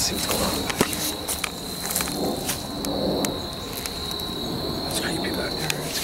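Insects trilling in one steady high note, with scattered sharp clicks and soft rustling from footsteps and camera handling.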